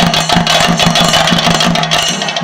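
Chenda drum ensemble playing a fast, unbroken roll of stick strokes.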